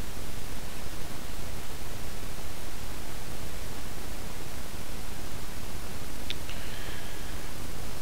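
Steady hiss of the voice recording's noise floor, with one brief click about six seconds in.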